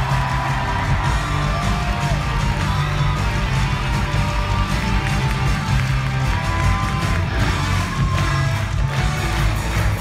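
Live rock band music playing loudly and steadily, with an audience cheering and whooping over it.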